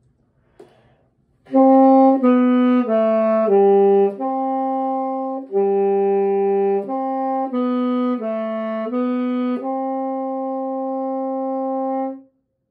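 Tenor saxophone playing a short stepwise scale exercise, starting about a second and a half in: four notes stepping down, a few longer notes and a run of shorter ones, ending on a long held note.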